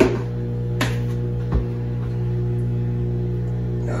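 Background music with steady held tones, and three light knocks in the first two seconds as a spoon and measuring cup are worked in a jar of Nutella.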